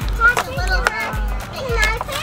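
Children's voices over background music with a pulsing low bass.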